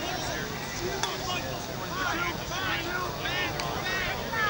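Players and spectators shouting across an open playing field during a youth lacrosse game, distant and indistinct, with a couple of sharp knocks. A low rumble of wind runs on the microphone.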